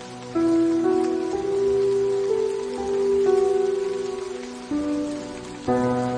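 Soft, slow solo piano playing a melody of separate struck notes, a new note about every half second to second, over a steady hiss of falling rain.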